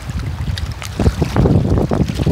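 Wind rumbling on the microphone over water sloshing and splashing, louder and choppier in the second half.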